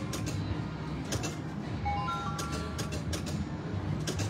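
Wheel of Fortune 3D video slot machine spinning its reels: a short run of four electronic tones stepping upward as a new spin starts about two seconds in, and light clicks as the reels stop, over a steady low hum.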